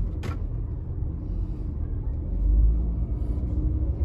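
Low rumble of a car driving, engine and tyres heard from inside the cabin, swelling louder about two and a half seconds in. A short click sounds near the start.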